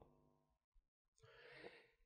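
Near silence, with a faint intake of breath at the microphone in the second half.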